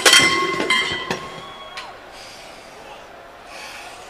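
A crash of things being knocked about, followed by a clear ringing tone that holds, then slides down in pitch and stops just under two seconds in. After it come a man's heavy breaths.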